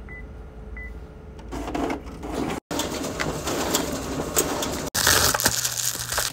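Two short beeps from a photocopier's touchscreen as buttons are pressed, over a low machine hum. After a cut, scattered rustling and clicks. From about five seconds in, loud crinkling of a plastic bubble mailer being handled and torn open.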